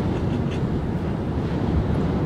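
Steady road and wind noise inside the cabin of a Nissan Leaf electric car cruising at motorway speed, about 90 km/h, with no engine sound.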